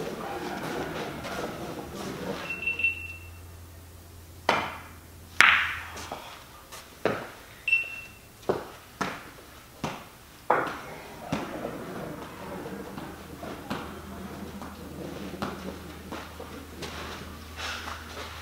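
Pool balls and cue clacking during a game of eight ball: a run of sharp, separate clicks, the loudest about five seconds in. A short high beep sounds twice, near three and near eight seconds.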